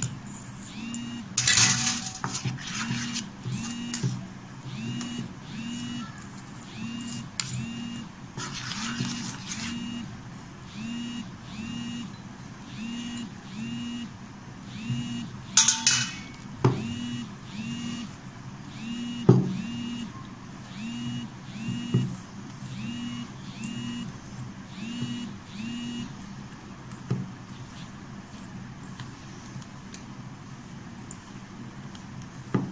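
Hands rubbing and squeezing a crumbly wheat-flour and ghee dough in a steel bowl: rustling scrapes of dough against the metal, loudest about a second and a half in and again around sixteen seconds in, with a few sharp knocks on the bowl. Underneath, a faint pitched pulse repeats about one and a half times a second.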